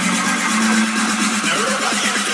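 Tech house music playing with its kick drum and bass missing, leaving hi-hat-like percussion and mid and high synth tones over a steady tone.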